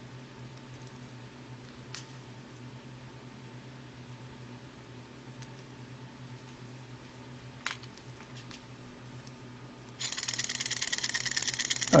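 A small alcohol-lamp-heated model Stirling engine, now warm enough, starts running about ten seconds in: a sudden fast, steady mechanical rattle of quick ticks from its pistons, linkage and flywheel. Before that only a low steady hum and a couple of faint clicks.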